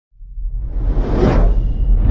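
Logo-intro sound effect: a whoosh that swells out of silence and peaks about a second and a quarter in, over a steady deep rumble.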